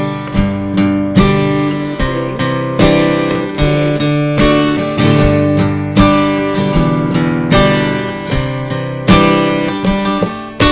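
Small-bodied acoustic guitar played in a bass-bass-strum groove: two single bass notes followed by a full chord strum, the pattern repeating steadily about every second and a half.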